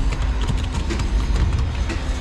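Steady low machinery rumble in a crane's control cabin, with a few light clicks in the middle as push-buttons on the control panel are pressed.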